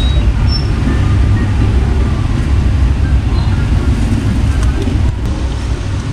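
A steady low rumble of background noise, with faint voices far off.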